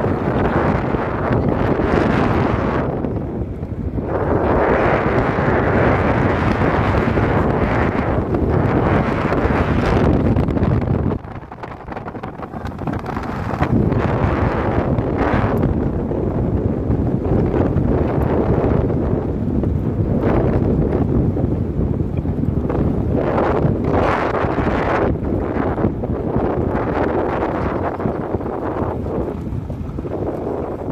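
Wind rushing over the microphone at an open window of a moving car, with road noise beneath it. The rush eases for a couple of seconds about eleven seconds in, then returns.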